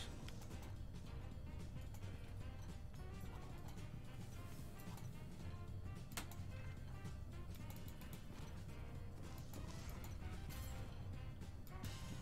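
Quiet online slot game music with short clicks from the game's sound effects over it, one sharper click about six seconds in.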